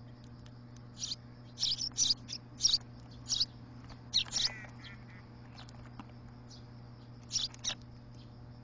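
Eurasian tree sparrows chirping: a quick series of short, high chirps starting about a second in, then after a pause two or three more near the end.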